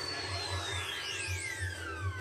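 Anime soundtrack: a long whistling sound effect that rises a little and then falls steadily in pitch, the sound of a projectile flying through the air, over quiet music with a soft pulsing low hum.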